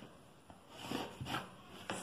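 Marking chalk scraping along a wooden pattern ruler on cotton fabric as a line is drawn, a few short scratchy strokes about a second in.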